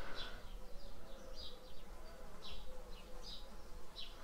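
Faint buzzing of a flying insect, with several short high chirps spread through it.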